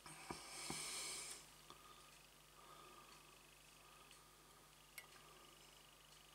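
Near silence: room tone with a low steady hum, a soft hiss lasting about a second near the start, and a few faint small clicks of handling.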